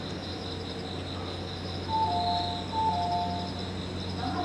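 Steady, pulsing chirring of insects, with a clean two-note falling chime sounding twice in quick succession about halfway through, the kind that comes before a station announcement.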